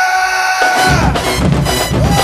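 Marching band music: a long held note ends about a second in, and loud drums come in with a steady beat.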